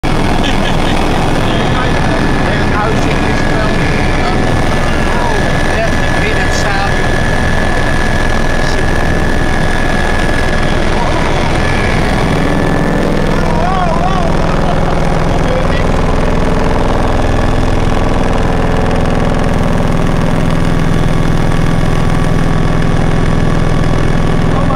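Helicopter in flight heard from inside the cabin: loud, steady rotor and engine noise. A thin high whine runs through the first half, and a deeper hum strengthens from about halfway through.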